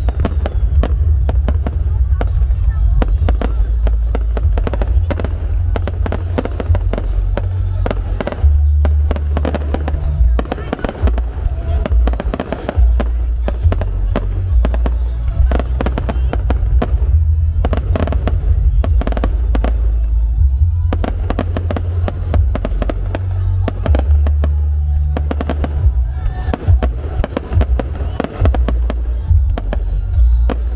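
Aerial firework shells bursting in rapid, overlapping bangs, many per second without a break, over a constant deep rumble.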